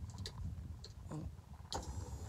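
A few faint scattered clicks of a powered driver's seat control switch being pressed, over a low steady rumble. The seat is thought to be already at its maximum height, so the press does not raise it.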